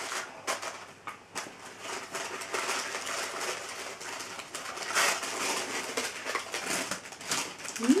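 Tissue paper and shredded paper filler rustling and crinkling as a cardboard box is unwrapped by hand, with small clicks and handling knocks; one louder rustle about five seconds in.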